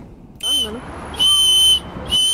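A child blowing a small toy whistle: two high-pitched, steady whistle blasts, a short one about half a second in and a longer, louder one just past the middle.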